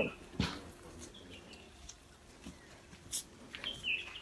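Quiet outdoor background with a few short, high bird chirps, one about a second in and another near the end, and a couple of light knocks.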